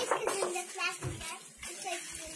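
A child's voice talking in short bits over a steady hiss, with a few low thumps about a second in.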